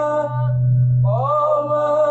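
Male a cappella group singing a shalawat in harmony: a long held note breaks off, a low bass hum carries on alone for about a second, then the voices come back in, sliding up into a new held note.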